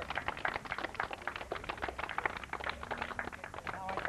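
A small group of people clapping: many quick, irregular claps overlapping.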